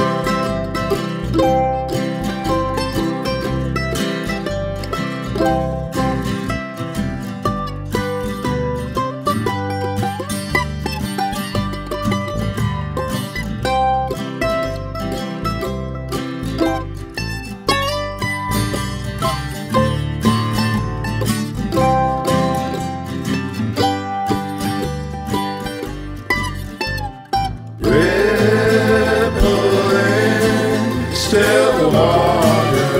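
Instrumental break of a folk band's song: plucked strings over a bass line, with no singing. About two seconds before the end, several voices come in singing.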